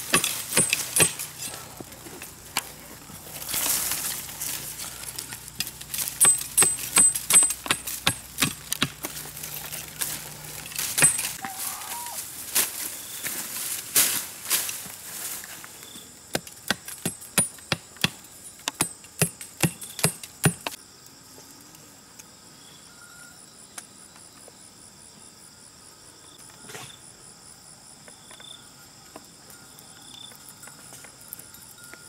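Irregular sharp strikes and scraping of a metal blade and a stick digging into a dry dirt bank, for about twenty seconds. After that the digging stops and a steady high insect buzz remains.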